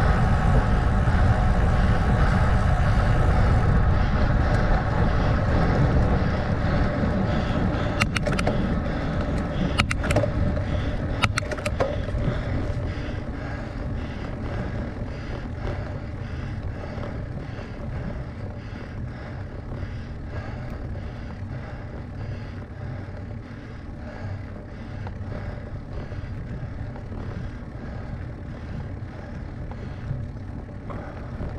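Wind rushing over a bicycle-mounted camera's microphone while freewheeling downhill, fading over the first dozen seconds as the bike slows onto a steep climb. It leaves a quieter, steady rolling noise. A few sharp clicks come about 8 to 12 seconds in.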